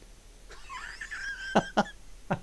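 A man's stifled, wheezy laugh building up, breaking into two short bursts near the end.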